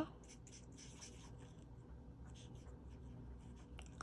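Faint scratching of an alcohol marker's tip stroking across cardstock as a small stamped image is coloured in, in short, irregular strokes.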